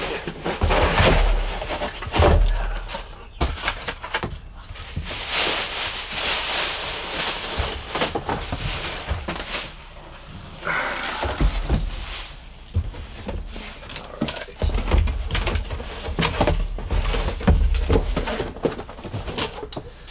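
Cardboard box flaps and a plastic bag rustling and crinkling as an RV roof fan assembly is lifted out of its box and unwrapped, with occasional dull thumps of the box and fan on a table.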